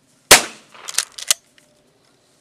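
A single loud gunshot, fired to accustom a young pointer puppy to gunfire, with a decaying tail, then two fainter sharp cracks less than a second later.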